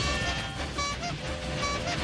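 Cartoon steam-locomotive sound effect: a rushing, rumbling chug as the train runs past, mixed with lively orchestral cartoon music.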